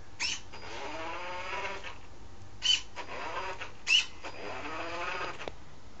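Small electric drive motors of a hobby robot car whining, their pitch rising and falling as the car drives off and turns. Three short sharp noises break in, soon after the start, about halfway and a second later.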